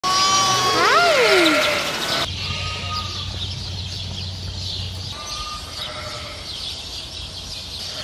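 Sheep bleating: one loud call in the first two seconds that rises and then falls in pitch, followed by fainter bleats.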